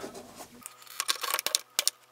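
Small irregular clicks and taps of a screwdriver and fingers against the plastic WAGO spring-clamp terminals of a robot power distribution board, starting about half a second in and coming faster after a second.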